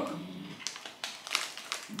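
A few irregular sharp crackles from snacking on hard chickpea puffs out of a crinkly foil snack bag.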